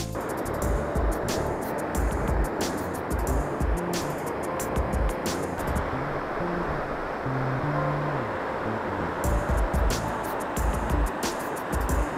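Background music with drum hits and a bass line, over the steady rush of river rapids.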